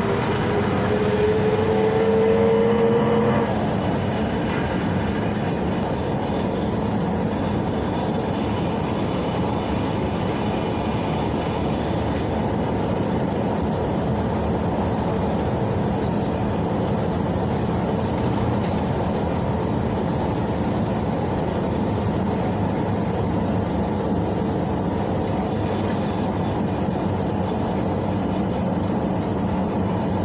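Cabin noise of a PAZ-32054 bus on the move, its ZMZ-5234 V8 petrol engine and drivetrain running: a whine rises in pitch as the bus accelerates and cuts off about three and a half seconds in, then a steady running noise.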